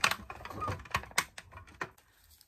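A quick, irregular run of light clicks and taps, about eight in two seconds and thinning out near the end: handling noise as the camera is moved and repositioned.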